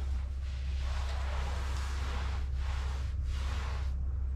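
A cloth rag rubbed over a ceramic toilet base and the tile floor, a rough swishing noise in strokes with brief pauses, cleaning the base so the silicone caulk will grip. A steady low hum lies underneath.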